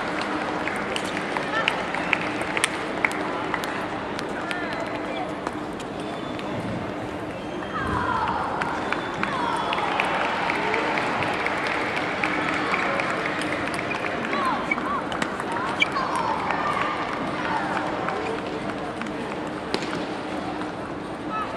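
Busy sports-hall ambience: many voices chattering over a faint steady hum, with scattered sharp clicks of table tennis balls striking bats and tables. Several short squeaks come in bunches about eight seconds in and again near sixteen seconds.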